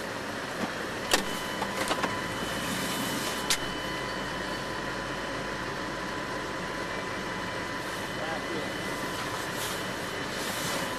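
Steady running noise inside a stopped car's cabin, with its engine idling and faint steady whine tones. A few sharp clicks break in about a second in, around two seconds, and once more at about three and a half seconds.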